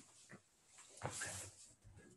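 Faint handling noises of a small telescope finder scope being picked up and carried close: a light tick, then a brief rustle about a second in.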